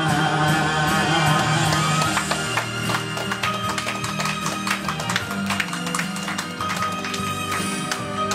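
A man's amplified singing voice holds a final note with vibrato for about the first second, over an instrumental backing track. The backing then carries on alone with a guitar-led outro of plucked notes.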